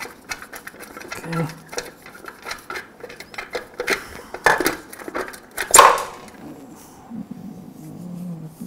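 Socket ratchet clicking rapidly as it backs out a rusted muffler bolt on a lawn mower engine, then two sharp metallic knocks as the steel muffler comes off and is set down, the second the loudest.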